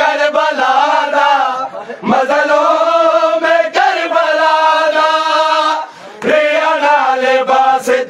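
Men's voices chanting a Punjabi Muharram noha, a mourning lament, together in long drawn-out phrases. There are short breaks about two seconds in and again about six seconds in.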